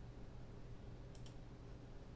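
Two faint computer mouse clicks in quick succession about a second in, over a low steady hum.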